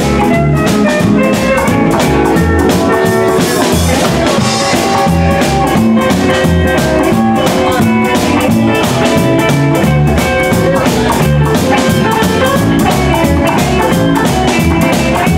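Live instrumental break from a small swing/boogie band: electric guitar playing the lead line over walking upright double bass and drum kit, with no vocal. A cymbal washes about four seconds in.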